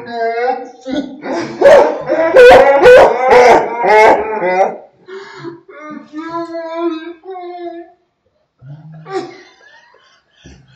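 A woman's vocal reaction played back slowed down, so that her cries come out stretched and drawn out, loudest in the middle and fading into quieter slowed voices.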